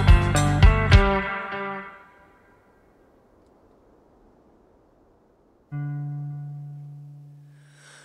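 A rock band with electric guitars and drums plays the last beats of a song, then its final chord rings out and dies away within about a second. A few seconds of near silence follow, and then a single low sustained note starts abruptly and slowly fades, opening an interlude.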